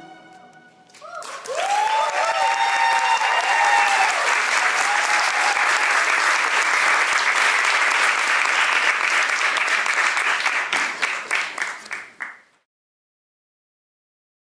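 Audience applauding with a few shouted cheers, starting about a second in as the music has just ended, holding steady, then thinning and cutting off abruptly near the end.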